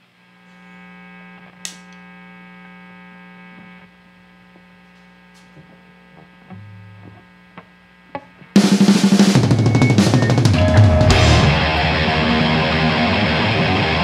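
Low steady amplifier hum with a sharp clapperboard snap about two seconds in, a brief low bass note and a few small clicks. About eight and a half seconds in, a thrash metal band comes in loud all at once: drum kit, distorted electric guitars and bass.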